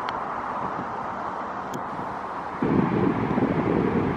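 Wind buffeting the microphone: a steady rush that turns louder and deeper about two-thirds of the way through. About halfway in comes a faint click, the putter striking the golf ball.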